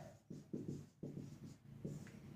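Marker pen writing on a whiteboard: several short, faint strokes as a word is written out.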